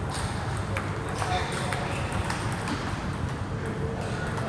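Table tennis ball in a practice rally: a string of sharp, hollow ticks from paddle hits and bounces on the table, coming at an uneven pace about every half second.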